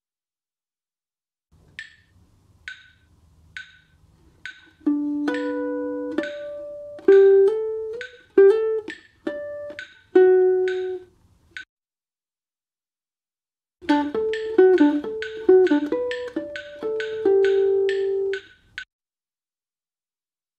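Guitar playing single notes and ringing natural harmonics over a click keeping a steady beat a little under once a second; four clicks count in before the first note. The playing stops for about two seconds in the middle, then a second phrase starts.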